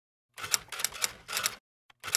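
Typewriter sound effect: a quick run of key strikes starting about half a second in, stopping briefly before the end.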